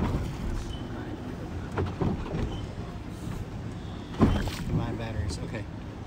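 Wind buffeting the microphone over the low wash of water around a drifting boat, with one sharp knock about four seconds in.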